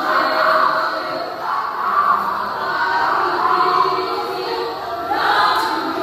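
A choir of women singing together, several voices moving in long sung phrases.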